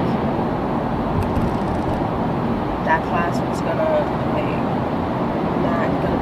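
Steady car rumble, road and engine noise heard from inside the cabin, with a woman talking quietly over it from about three seconds in.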